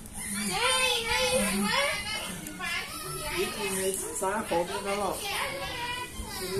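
Children's high-pitched voices talking and calling in a string of short phrases with brief gaps.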